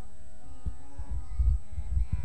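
A steady hum of held tones with several overtones, under irregular low thumps and knocks from microphones being handled on the stage's sound system.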